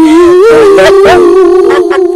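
A boy's long, loud, drawn-out yell of glee, held at nearly one pitch and wavering slightly.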